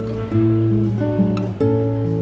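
Background music: an acoustic guitar playing a gentle run of notes and chords that change about every half second.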